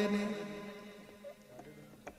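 A man's voice holds the last note of a sung Rajasthani devotional bhajan line and fades away within about a second. A quiet pause follows.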